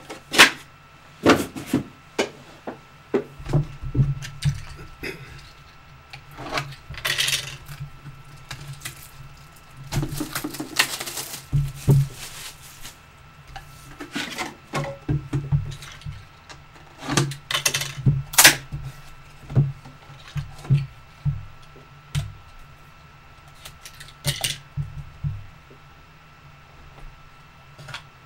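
Hands handling and opening a cardboard box of trading cards on a table: irregular taps, knocks and scrapes of cardboard, with a few longer rustling scrapes as the box is worked open and its cards are slid out.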